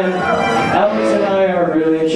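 Live rock band playing, with a voice over the music.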